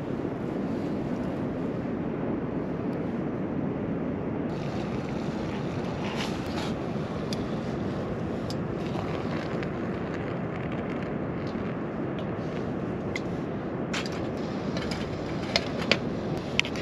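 Steady wind rushing over the microphone. From about a third of the way in come light clicks and clinks of metal camping cookware being handled: a pot lifted off the stove, a mug and a spork.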